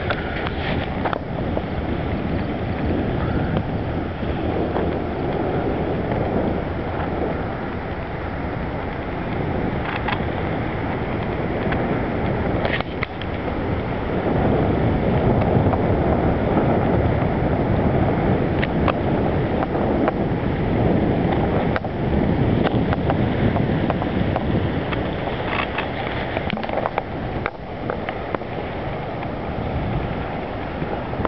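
Steady rush of river whitewater below a dam spillway, mixed with wind buffeting the microphone; somewhat louder through the middle.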